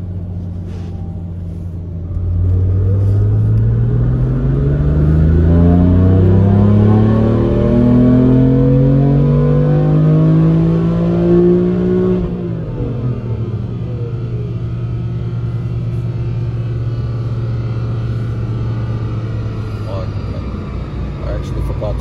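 BMW S55 twin-turbo straight-six doing a full-throttle dyno pull in fifth gear, heard from inside the cabin: the engine note climbs steadily for about ten seconds toward high revs. Then the throttle closes and the pitch falls quickly to a steady lower drone.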